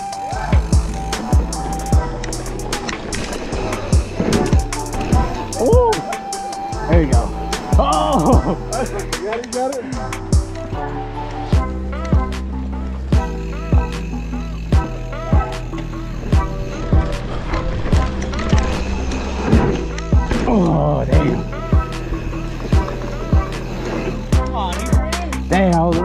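Background music with a steady beat and a voice in it, over the rolling tyre noise of a mountain bike on a dirt trail.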